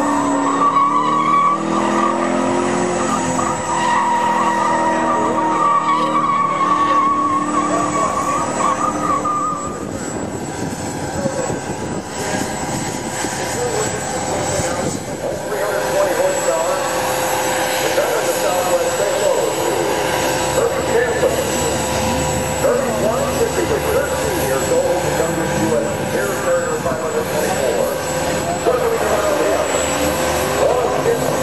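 A 2010 Shelby GT500's supercharged V8 revving as the car drifts, its tires squealing. From about halfway through, a propeller aerobatic airplane's engine joins in, running at a steady pitch.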